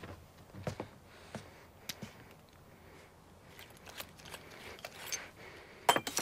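Soft, sparse footsteps and clothing rustle, at first about one step every two-thirds of a second. Near the end comes a sharper click as a wooden-handled stick grenade is handled.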